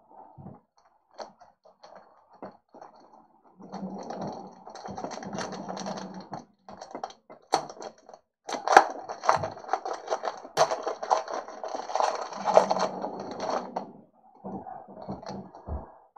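Foil wrapper of a trading card pack crinkling and crackling as it is torn open by hand. The crinkling starts about four seconds in, grows louder with sharp crackles in the middle, and stops shortly before the end.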